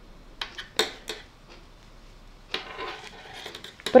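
Thin metal knitting needles clicking lightly against each other as knit stitches are worked, a few separate clicks with a brief rustle of yarn and fabric.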